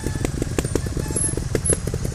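Trials motorcycle's single-cylinder engine running at low revs, an uneven putter of about eight beats a second, as the bike picks its way slowly down a dirt slope.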